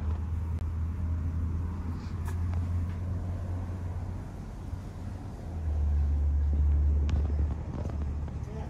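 A steady low rumble that swells louder about two-thirds of the way through, then eases, with a couple of faint clicks.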